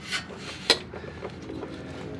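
Hand-handling noise under a truck as fingers reach up into the transmission to pull out an O-ring: light rubbing and scraping against the parts, with one sharp click about two thirds of a second in.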